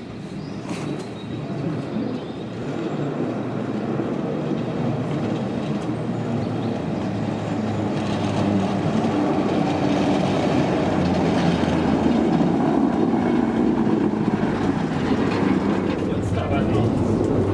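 1936 Düwag-built former Rheinbahn tramcar No. 107 approaching along the track, its wheels rumbling on the rails and the sound growing steadily louder as it comes closer.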